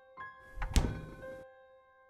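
Refrigerator door shutting with a single thunk a little under a second in, over soft piano music.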